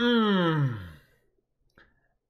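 A man's drawn-out vocal exhale, its pitch sliding steadily down over about a second before fading out, followed by a faint short click near the end.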